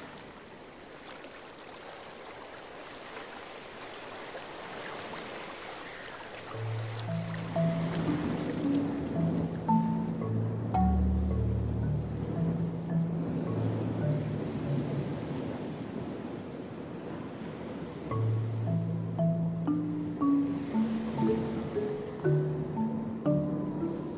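Sea waves and wind wash steadily for the first several seconds, slowly growing louder. About six seconds in, slow instrumental music comes in with a low melody of short notes.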